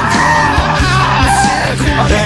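Loud hard rock music with a drum beat and a yelled, held vocal line.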